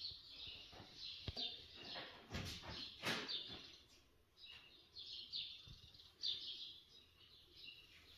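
Small birds chirping faintly, a string of short falling chirps repeated throughout, with a few soft knocks in between.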